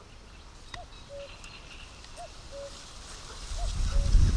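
A bird calling a two-note call, a higher note then a lower steady one, three times about a second and a half apart, with fainter high chirps behind it. A low rumble builds near the end and becomes the loudest sound.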